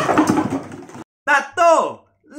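A man's loud, strained laughter, cut off abruptly about halfway through. After a brief silence come two short vocal cries that fall steeply in pitch.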